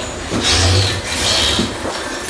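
Things being moved about and rubbing against each other inside a kitchen cabinet: two scraping sounds, about half a second in and again about a second and a half in.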